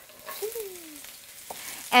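Carrots and cabbage tipped from a bowl into hot oil in a wok, sizzling, with a single sharp knock near the end.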